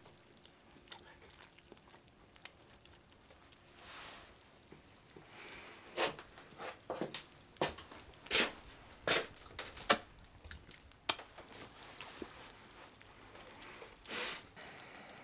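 Quiet room tone, then a run of about a dozen irregular sharp clicks and knocks over several seconds in the middle.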